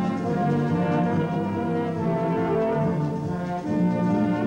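Full brass band playing sustained chords that move from one to the next.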